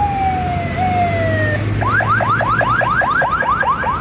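Police vehicle siren: two slow falling tones, then from about two seconds in a fast yelp of rising sweeps, about five a second, over the low hum of passing traffic.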